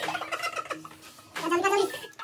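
Men laughing: a burst of rapid, pitched laughter at the start and another about one and a half seconds in.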